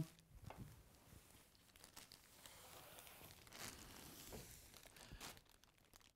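Faint crinkling and rustling of black plastic bin bags as balls of yarn are lifted and rearranged on a table, in scattered soft bursts.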